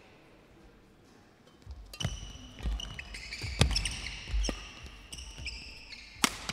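A badminton rally: sharp racket hits on the shuttlecock and court shoes squeaking on the floor, starting about two seconds in after a quiet start.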